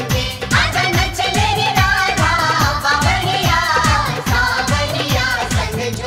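Hindi Krishna bhajan (devotional song): singing with melodic accompaniment over a steady, rhythmic drum beat.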